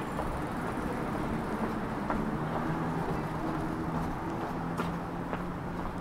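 City street ambience: a steady low rumble of distant traffic, with a faint engine-like hum from about two seconds in. A few light footstep taps sound over it.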